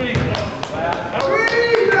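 A basketball bounces a few times on a hardwood gym floor in a reverberant hall, with a man's voice shouting over it in the second half.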